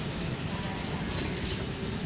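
Yellow RegioJet passenger train with an electric locomotive rolling slowly into a station: a steady rumble of wheels on rails, with a faint thin high squeal from about a second in.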